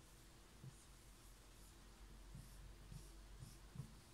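Felt-tip marker writing on a whiteboard: a run of short, faint squeaky strokes as a structural formula is drawn.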